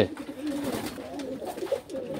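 Domestic pigeons cooing in a loft: a low, wavering coo.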